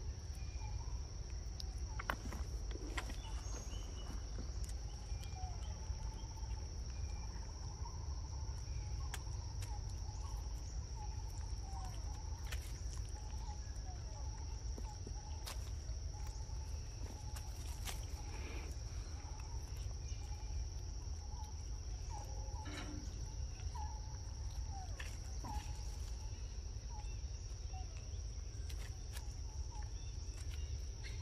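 Steady high-pitched insect drone, with many short chirping calls and scattered sharp clicks over a low rumble.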